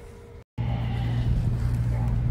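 A steady, loud low hum from a motor or engine, cutting in abruptly about half a second in after a brief dropout.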